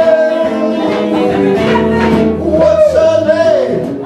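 Live male singing with electric guitar accompaniment: a long held sung note for about the first second and a half, then a shorter phrase that bends up and down in pitch. The guitar is a PRS hollowbody electric with a piezo pickup.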